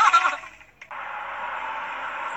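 Tinny, band-limited playback of a fail-video compilation: a voice trails off in the first half second, then after a brief near-silent gap and a click there is a steady hiss.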